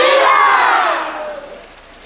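A crowd shouting and cheering together, one long shout that dies away about a second and a half in.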